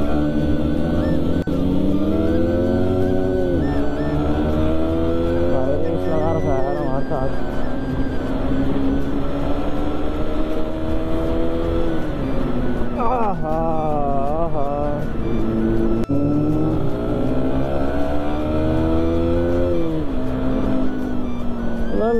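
Sport motorcycle engine under hard acceleration, its pitch climbing steadily for a few seconds and then dropping back at each upshift, several times over. About two-thirds of the way through, the revs waver up and down for a couple of seconds.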